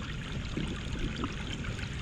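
Steady running water, a small waterfall trickling and splashing into a pond.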